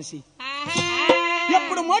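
A burrakatha performer's voice holds one long sung note from just after the start almost to the end, wavering slightly and bending at the close. A few sharp taps sound under it.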